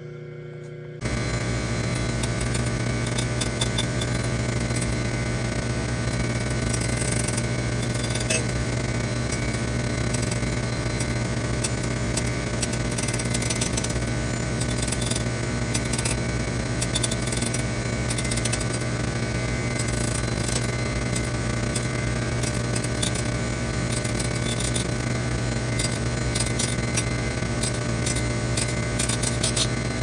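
Surface grinder running, its wheel grinding the rounded rear of a steel Mauser receiver: a steady motor hum under a hiss with a fine crackle of wheel contact. It starts suddenly about a second in.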